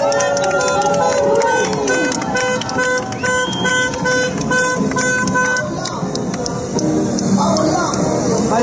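A car horn sounding a quick series of short toots, about two or three a second for some four seconds, over people's voices.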